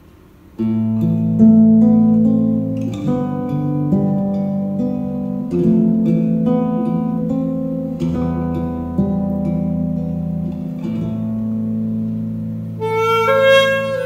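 Fingerpicked acoustic-electric guitar playing a slow introduction of arpeggiated chords over a bass line, starting suddenly about half a second in. Near the end a pocket saxophone (Xaphoon) comes in with the sustained, reedy melody.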